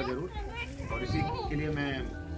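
Children's voices chattering and calling out.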